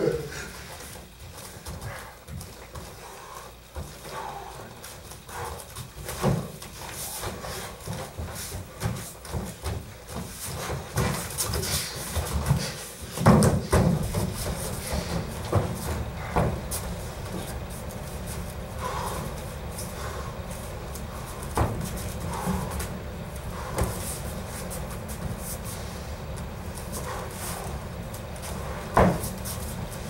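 Light bare-knuckle sparring on foam mats: heavy breathing and panting with bare feet shuffling and scattered thuds of footfalls and blows. The loudest knocks come about 13 seconds in and near the end.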